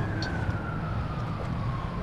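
A siren wailing faintly in one slow glide, its pitch falling steadily. Beneath it is a steady low background rumble.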